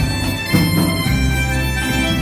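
Live band playing an instrumental passage: an electronic keyboard holds sustained, reedy lead notes over drum kit, bass and electric guitar.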